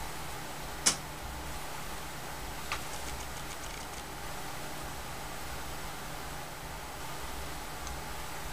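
Steady low background hum with two small sharp clicks, one about a second in and a fainter one near three seconds.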